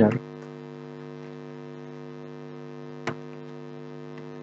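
Steady electrical mains hum, a low buzz of evenly spaced tones, with a single keyboard click about three seconds in.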